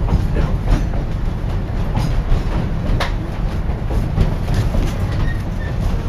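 Durango & Silverton narrow-gauge train running along the track, heard from inside a passenger coach: a steady rumble of wheels on rail with a couple of sharp clicks about two and three seconds in.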